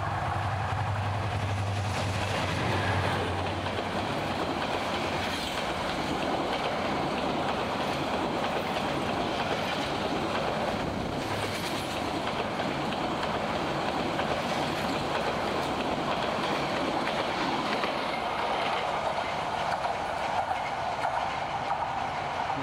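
Diesel locomotive hauling a passenger train past at speed, close by. An engine drone is heard in the first few seconds, then a long, steady rumble of the coaches' wheels on the track.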